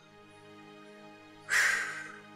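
Soft background music with held notes, and about one and a half seconds in, a single short crow caw cuts in over it and is the loudest sound.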